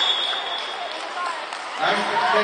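Crowd chatter in an indoor sports hall, with faint voices through it; a man's voice comes back in loudly near the end.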